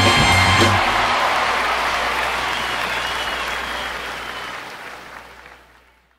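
A live band's final held chord cuts off about a second in, and audience applause follows, fading away to silence near the end.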